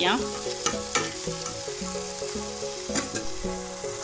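Chicken and onion-tomato masala frying in a pan, sizzling while a spatula stirs it, with a few sharp scrapes of the spatula against the pan.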